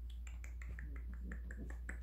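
A person making quick clicking noises with the mouth, about ten short clicks at roughly five a second.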